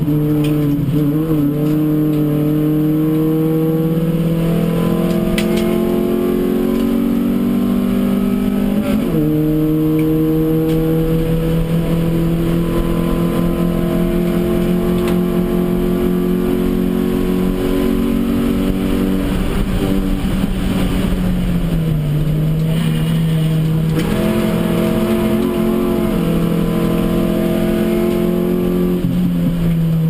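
Hyundai Excel race car's four-cylinder engine at racing speed, heard from inside the cabin. It is held high and steady, with a brief dip about nine seconds in and another easing-off and pick-up a little past twenty seconds.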